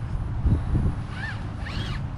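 Electric motor and geared drivetrain of a scale RC rock crawler working in short throttle bursts as it climbs dirt and rock. There are a couple of knocks about half a second in, and short whines that rise and fall in pitch near the end.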